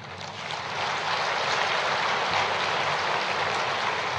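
Large audience applauding, swelling over the first second and then holding steady.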